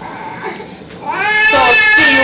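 Speech: a drawn-out, high-pitched "so" that glides up and is held, starting about a second in.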